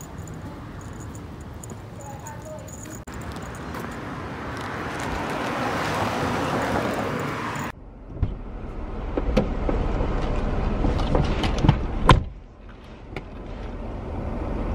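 Outdoor street ambience with a rushing noise that swells over several seconds, the kind a passing vehicle makes. It cuts off abruptly and gives way to the inside of a car, where a string of knocks and clicks from handling things sounds over a low rumble.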